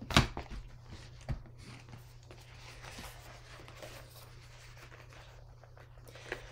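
Handling of a leather brush roll holding paintbrushes: a couple of soft knocks near the start and about a second in, then faint rustling and shifting as it is rolled up and slid across the table.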